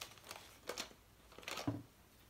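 A few light clicks and taps from small craft items being handled on a table, the loudest about one and a half seconds in.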